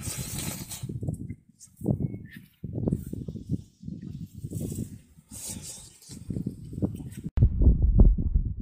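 Wind rumbling on the microphone in uneven gusts, with a hiss, cutting in and out several times. It grows loud just before the end.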